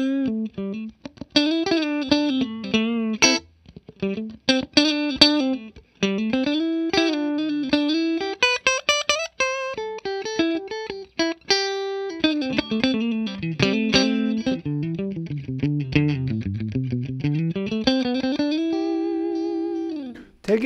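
Clean electric guitar lead from a Fender American Professional II Stratocaster HSS, played through a Bondi Effects Squish As compressor pedal into a Fender '65 Twin Reverb amp. It plays single-note phrases with string bends and vibrato, evenly and crisply compressed. A long sustained note is held near the end.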